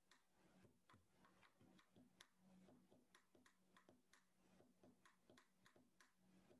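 Near silence: faint room tone with quick, faint clicks, about three a second and not quite regular.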